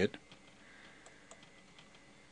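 Near silence with a couple of faint computer mouse clicks about a second in, as Copy is chosen from a right-click menu.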